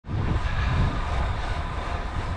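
Wind buffeting the camera microphone while cycling along a tarmac road, a steady rushing rumble with road noise underneath, cutting in abruptly at the start.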